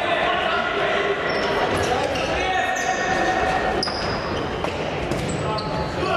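Futsal ball being kicked and bouncing on a wooden indoor court, with shoes squeaking on the floor and players' shouts in an echoing sports hall.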